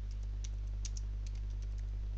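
Typing on a computer keyboard: a quick run of about a dozen light key clicks as a word is entered, over a steady low hum.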